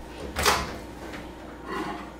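Over-the-range microwave door being popped open: a sharp clunk about half a second in, then a softer knock near the end.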